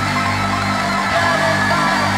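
Loud live digital hardcore music played over a concert PA: a steady, held low bass under dense, distorted upper layers, with no vocals.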